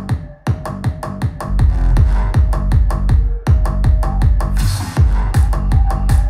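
Electronic dance music with a steady kick-drum beat played through Edifier R1600T Plus active bookshelf speakers. About a second and a half in, a strong deep-bass layer joins from the Pioneer S-W160S-K subwoofer with its 8.7-inch driver, filling in the low end that the speakers' 5-inch drivers lack.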